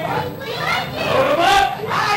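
Several voices yelling and screaming, with long swooping cries that are loudest in the second half.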